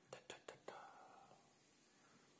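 Four quick, faint mouth pops in under a second, like whispered 'pa' syllables, followed by a short breathy hiss that fades out.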